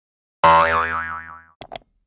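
Cartoon 'boing' sound effect: a sudden springy twang whose pitch wobbles up and down as it fades over about a second, followed by two quick clicks.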